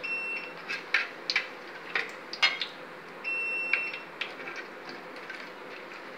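Steel ladle scraping and knocking against an aluminium cooking pot while stirring, in several sharp clicks. Two steady electronic beeps, each about a second long, sound near the start and about three seconds in.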